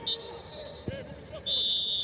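Referee's whistle blowing for half-time: a short blast at the start, then a long steady blast beginning about one and a half seconds in.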